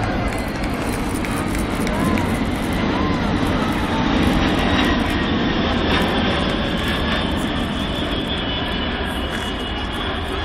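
Jet roar of the Boeing 747 Shuttle Carrier Aircraft with Space Shuttle Endeavour mounted on its back, flying past overhead. The steady rumble swells to its loudest about four seconds in, then slowly fades.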